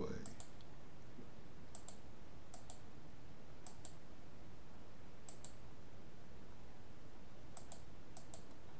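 Computer mouse clicking: about six short pairs of clicks at irregular intervals, over a steady faint hiss.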